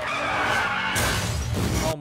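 Car tyres screeching in a skid, an animated show's sound effect, with a fresh surge of noise about a second in.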